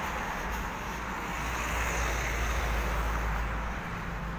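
Road traffic: a passing vehicle's engine and tyre noise over a low rumble, growing louder about two seconds in and then easing off.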